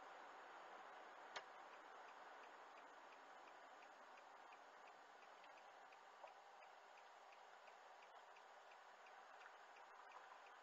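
Car turn-signal indicator ticking faintly and evenly, about three ticks a second, over a low hiss inside the cabin. A single sharp click comes just before the ticking begins.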